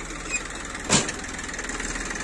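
Tractor engine idling steadily while it drives the hydraulic pump of a tractor-mounted loader tipping its bucket into a trolley, with one sharp knock about a second in.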